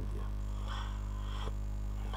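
Steady low electrical mains hum picked up by the microphone, with a faint soft noise about halfway through.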